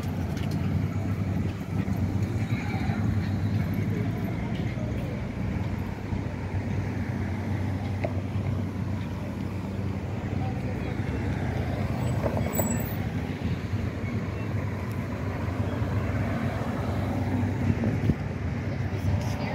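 Street traffic passing: cars going by with a steady low rumble of engines and tyres, with voices of passers-by faintly underneath.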